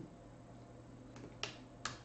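A faint tick, then two sharp, brief clicks about half a second apart near the end, over quiet room hum.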